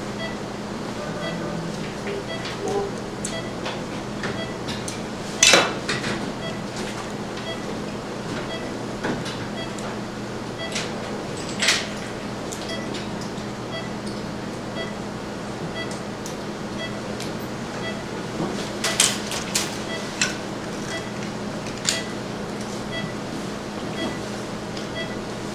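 Steady hum of operating-room equipment. Metal surgical instruments clink and knock a few times as laparoscopic ports and the scope are handled. Faint short beeps come about once a second.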